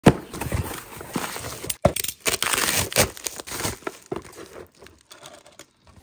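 A cardboard shipping box being handled and opened by hand: irregular crinkling and scraping of cardboard and packaging with a few sharp snaps, dying away over the last second or two.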